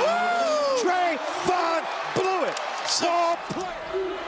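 Basketball arena crowd cheering and yelling, with excited voices swooping up and down in pitch and a few sharp knocks from the court.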